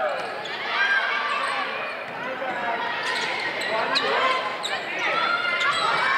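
Indoor volleyball rally: players and spectators calling and shouting over one another, with a few sharp smacks of the ball from about three seconds in.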